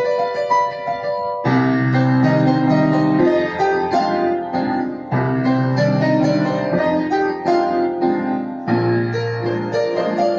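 Upright piano played solo: a lighter passage of upper notes, then from about a second and a half in, fuller chords over deep bass notes that carry on to the end.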